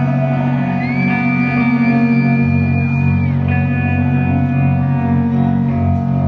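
Amplified electric guitar played live, sustained ringing notes through a large hall's sound system. A high note slides up about a second in, holds for a couple of seconds and then drops away.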